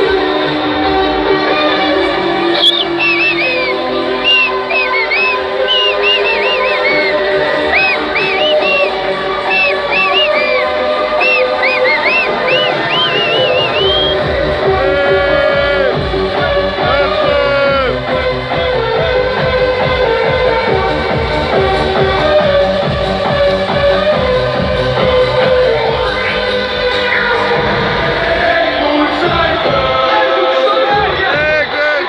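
Loud electronic dance music from a festival stage sound system, heard live from among the crowd. The first half is a breakdown of high gliding melodic lines over sustained chords; a steady kick-drum beat comes in about halfway.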